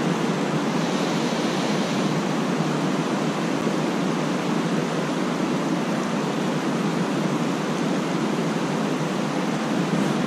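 Steady rushing of fast-flowing creek water below a dam: an even, unbroken noise with no changes.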